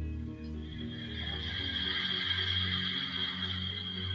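Slow ambient synthesizer background music: held low chords that shift about halfway, with a soft airy high layer above them.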